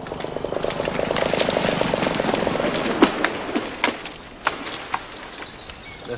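An ash tree falling after being cut through at the base: a rising rush of branches and leaves, then a run of sharp cracks and snaps about halfway through as it comes down.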